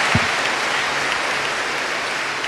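Large audience applauding steadily.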